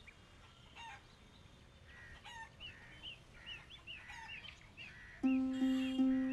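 Faint bird chirps, short rising-and-falling notes a few times a second. About five seconds in, soft background music with held notes comes in.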